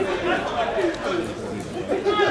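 Several men's voices chatting close by, an indistinct running conversation among spectators.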